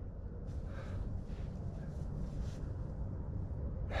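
Steady low wind rumble on the microphone. From about half a second to two and a half seconds in there is faint rustling as gloved fingers crumble wet mud off a small coin.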